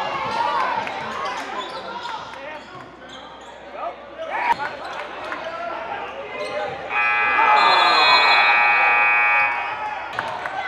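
Gymnasium scoreboard buzzer sounding one long steady tone for about two and a half seconds, starting about seven seconds in, as the game clock runs out. Before it, voices and a bouncing basketball echo in the gym.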